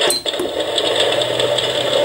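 An electric fireplace's heater fan switching on when its heat button is pressed: a brief high beep, then the fan runs with a steady whir and a low hum.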